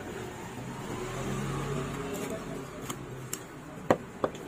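Large knife cutting through a scaled snapper chunk on a wooden chopping block, with a few light ticks and then one sharp knock of the blade striking the wood near the end. A low engine hum sits underneath.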